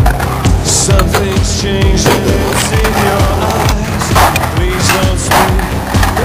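Music with a steady beat over a skateboard: urethane wheels rolling on concrete and a few sharp clacks of the board.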